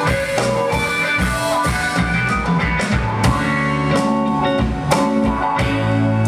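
Live rock band playing: electric guitars over a drum kit, with steady drum hits under sustained guitar notes.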